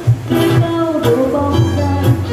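Live acoustic performance of a Vietnamese song: a woman singing into a microphone over a plucked acoustic guitar, with a violin.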